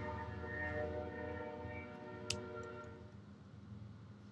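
Train horn sounding a held chord of several steady tones, fading out about three seconds in. A single short click comes just past two seconds.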